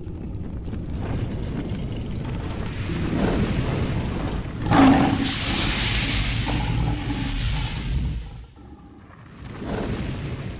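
Dramatic intro sound effects: a low rumble builds, then a sudden boom about five seconds in sets off a bright rushing hiss. It dies down a little after eight seconds, and a whoosh swells near the end.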